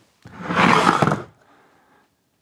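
A large tape dispenser on a wooden base sliding across a wooden workbench top: about a second of wood scraping on wood.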